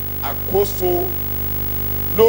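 Steady electrical mains hum in the microphone's amplified sound, with a brief spoken word or two about half a second in.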